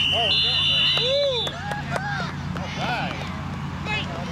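Referee's whistle blown in one long steady blast, with a second, higher whistle joining partway; both stop about a second and a half in, signalling the play dead. Players and spectators keep shouting around it.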